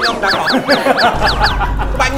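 A comic sound effect: a quick run of about seven squeaky chirps, each falling in pitch, with a low bass rumble coming in just after a second.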